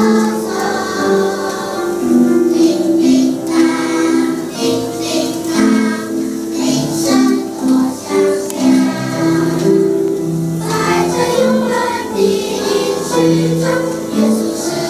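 Children's choir singing a worship song together, moving through held sung notes.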